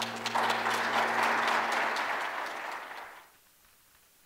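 Audience applauding in a theatre as the choir's last held chord dies away beneath it; the clapping fades out a little after three seconds in.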